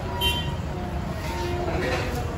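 Steady road-traffic rumble with short vehicle-horn tones, one about half a second in and another past the middle, over background voices.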